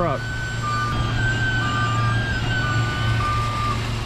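Cotton module truck's diesel engine running steadily while its reversing alarm beeps about once a second as it backs under and loads a cotton module, with a steady high whine over the engine.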